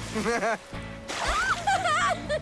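Two characters laughing in short repeated bursts over steady background music.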